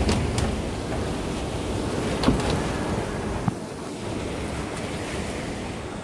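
Typhoon-force wind blowing against a loose sliding glass door, heard from inside as a dense, steady rush of noise. A few sharp knocks break it, the loudest about two seconds in, and the rush eases slightly in the second half.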